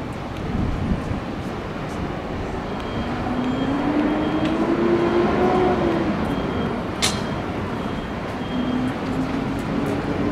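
Street traffic: a motor vehicle passes close by, its engine note rising in pitch and loudness and then falling away. There is a sharp click about seven seconds in.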